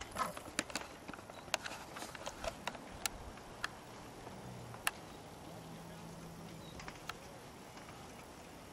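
Quiet background with a dozen or so faint, sharp clicks scattered irregularly through it, and a faint low steady hum for a few seconds past the middle.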